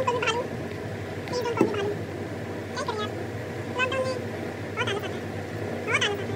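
A series of short, high-pitched calls, one about every second.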